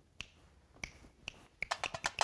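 Finger snaps beating out a rhythm: three single snaps about half a second apart, then a quick run of snaps near the end.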